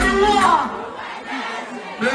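Concert crowd shouting and cheering as the music drops out, loud in the first second and then falling away.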